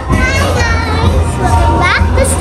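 A young girl's excited, high-pitched voice, rising sharply near the end, over loud pop music with a steady bass beat.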